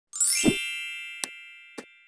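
Intro logo sound effect: a bright metallic chime that strikes with a low thud and rings out slowly, followed by two short clicks.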